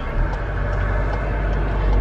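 Steady low rumble of a car heard from inside the cabin, the engine running with faint hum above it.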